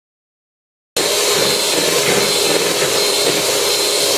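Electric hand mixer running steadily with a whine, its beaters whisking eggs and sugar in a bowl; the sound cuts in suddenly about a second in after silence.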